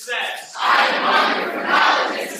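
A large group of young men shouting a line of their creed together, the call-and-response answer to a leader. A short chanted voice opens it, and about half a second in the loud mass of many voices comes in.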